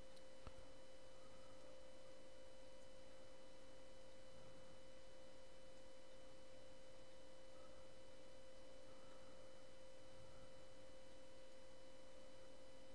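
Faint steady electrical whine: one constant mid-pitched tone with fainter higher tones over a low hiss, and a single light click about half a second in.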